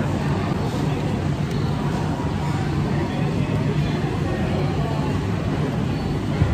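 Busy indoor food-hall ambience: indistinct chatter from many diners over a steady low hum.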